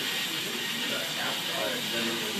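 Faint voices talking in the background over a steady hiss.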